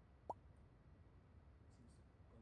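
Near silence with a low hum, broken once about a third of a second in by a single brief upward-gliding plop.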